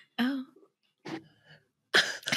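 A person's short voiced sound, then a brief throat clear about a second in.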